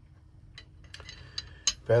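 Aluminium choke gauge being slid into the muzzle of a steel shotgun barrel, with a few light metallic clicks and taps as it meets the bore. The loudest click comes near the end.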